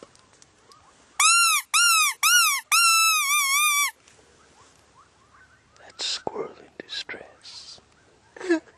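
A predator call sounded in four loud, high squealing notes about a second in. The first three are short and arch up and down in pitch, and the last is longer and wavers. It is calling coyotes in.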